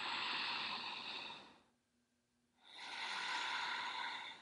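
A woman breathing strongly through the nose: a long inhale ending about one and a half seconds in, a second of near silence, then a long exhale. The breaths are paced at about three seconds each, as in a guided breathwork round.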